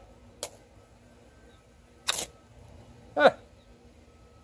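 Handling of a knife and a ferro rod: a light click, then a short, sharp scrape about two seconds in. Near the end comes a brief vocal sound that falls in pitch, the loudest thing here.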